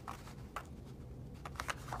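Scissors cutting paper: a few faint, short snips and paper rustling, most of them in the second half.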